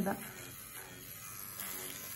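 Cartridge tattoo machine running with a faint, steady buzz while its needle is cleaned against a sponge.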